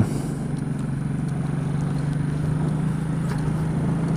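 Kymco K-Pipe 125's single-cylinder engine running at a steady low hum under wind and road noise, heard through a microphone inside a motorcycle helmet.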